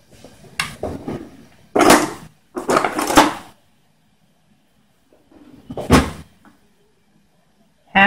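Kitchen handling noises: a few short clatters and knocks as a measuring cup and utensils are picked up and set down. The two longest come about 2 and 3 seconds in, and a sharper knock with a dull thud comes about 6 seconds in.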